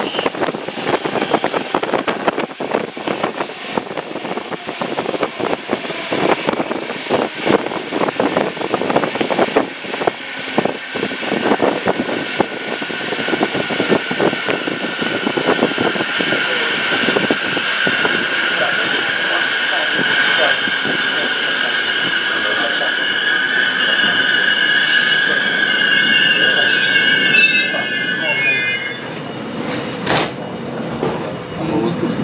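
DB Regio regional train slowing into a station, heard from inside the carriage: the wheels clatter over the rail joints at first, then a high steady brake squeal in two or three tones sets in about a third of the way through. The squeal cuts off near the end as the train comes to a stop.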